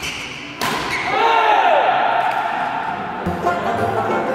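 A badminton racket hits the shuttlecock hard about half a second in, followed by a player's shout as the rally and match are won. Music starts near the end.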